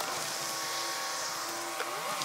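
Chevrolet Silverado ZR2 Bison pickup creeping slowly along a gravel track at low engine speed, heard from outside the truck, under a steady high hiss.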